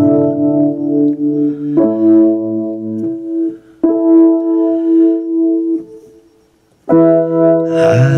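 Keyboard playing held chords in an instrumental passage, changing chord about every two seconds. The sound dies away and a new chord comes in about a second before the end.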